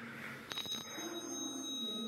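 Otis 2000 lift's arrival chime: a click and then a single high bell-like tone about half a second in, held steady for nearly two seconds.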